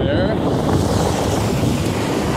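Wind buffeting a phone's microphone outdoors: a loud, steady rumble.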